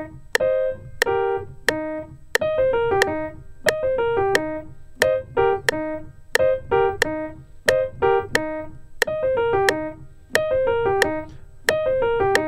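Piano playing a run that descends an E-flat major six chord in sixteenth notes, in repeated short falling phrases, with a metronome clicking about one and a half times a second.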